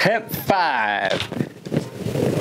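A person's voice making a drawn-out sound without words that slides down in pitch, followed by a few short vocal noises.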